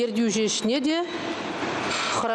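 A woman speaking for about a second, then a pause filled by steady background noise.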